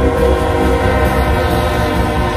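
Live band playing amplified through a PA, with electric guitars, drum kit and saxophone, holding a long sustained chord.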